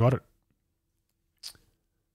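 A man's voice finishes a word, then silence broken about one and a half seconds in by a single brief, faint mouth noise close to the microphone.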